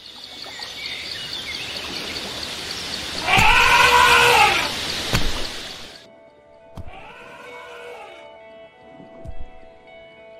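A loud elephant trumpet call about three and a half seconds in, over a steady rushing outdoor noise that cuts off suddenly at about six seconds. Then soft music, with a fainter, muffled call a second later.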